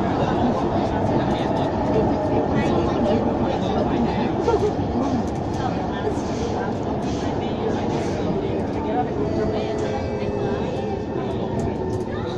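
Metro train carriage interior while running: a steady low rumble of the train, with passengers' voices faint in the background. A steady whine joins near the end.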